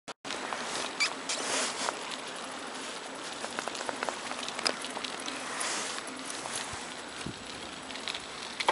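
Bicycle rolling slowly over rough asphalt: a steady tyre crunch with scattered small clicks and ticks.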